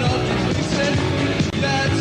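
A post-punk rock band playing live, with electric guitar and drums, and a male voice singing into the microphone.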